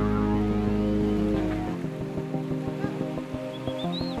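Background music: a sustained, heavy rock chord with a deep bass drops out about two seconds in. A lighter section with a quick ticking beat of about five ticks a second takes over.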